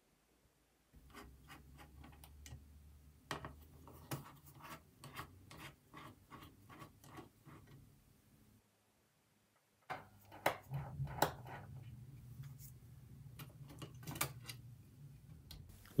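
Faint, quick clicks and light scraping from a small T6 Torx screwdriver turning out the tiny fan screws inside a 2012 Mac mini. The clicks come in two stretches with a short gap between them.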